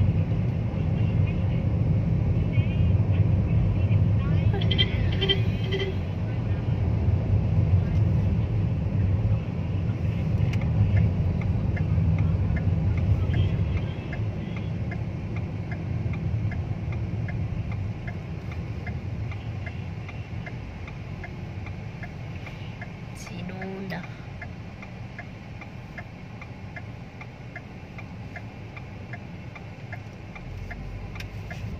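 Car engine and road noise heard from inside the cabin while driving, a low rumble that is loudest in the first half and eases off as the car slows. From about ten seconds in, a steady light ticking repeats about twice a second.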